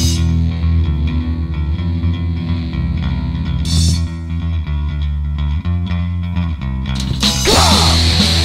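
Loud heavy rock recording: a low bass and guitar riff, with a cymbal crash about four seconds in. About seven seconds in the full band comes in louder with crashing cymbals, and a shouted vocal starts near the end.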